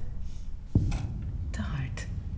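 A single dull thump about three-quarters of a second in, then a faint breathy voice sound like a sigh or whisper, over a low steady hum.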